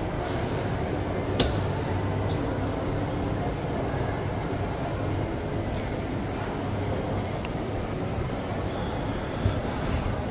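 Shopping-mall ambience: a steady hum with distant, indistinct voices, and one sharp click about a second and a half in.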